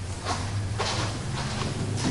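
Room tone: a steady low hum, with a couple of faint soft noises in the first second.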